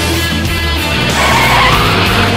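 Rock music with guitar, and from about a second in a Formula Three race car going past loud over it.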